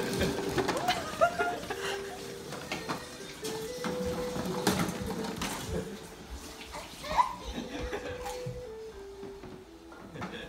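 Electronic tune from a baby's ride-on push toy: a simple melody of single beeping notes stepping up and down, playing on and on. A baby squeals near the start, and there are scattered knocks of the toy and its wheels.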